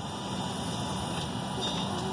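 Steady airliner cabin noise: an even low rumble of air and machinery, with no distinct events.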